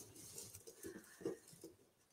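Faint rustling of folded paper slips stirred by hand in a plastic box during a prize draw: a few soft, short scratches, the clearest about a second in.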